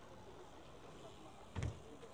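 Faint outdoor background with a single dull thump about one and a half seconds in.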